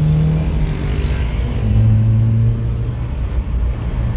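Car engine revving, heard from inside a car's cabin: its pitch climbs briefly near the start, then a second steady rev is held for about a second in the middle.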